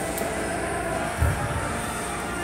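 Steady low rumble of gym background noise, with one short dull thump a little past halfway.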